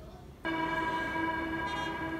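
A single sustained synthesizer note starts suddenly about half a second in and holds steady at one pitch, with a bright, bell-like stack of overtones.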